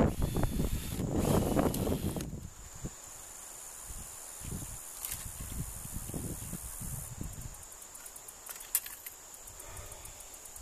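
Steady high-pitched insect drone throughout, with a louder stretch of rustling and handling noise in the first two seconds from work on a chain-link fence post, then softer scattered knocks and rustles.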